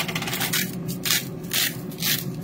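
A seasoning shaker is shaken over raw steaks: a quick rattle of shakes at first, then single shakes about every half second.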